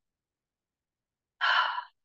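Near silence, then about a second and a half in, a woman's brief audible breath.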